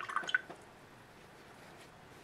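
A cloth rubbing a plastic paint palette clean, a brief squeaky wipe in the first half second, then faint room tone.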